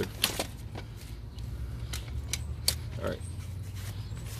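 Several sharp clicks and clacks as the frame tubes and fittings of a collapsible InStep bike trailer are snapped together, scattered over the first three seconds.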